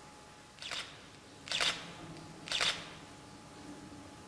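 Three short scuffs or scrapes about a second apart, the last two louder, over a faint steady hum.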